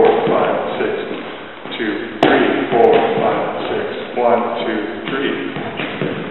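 Shoes stepping through jitterbug footwork on a hardwood floor, with a sharp tap a little over two seconds in and a lighter one near three seconds, under a man's voice.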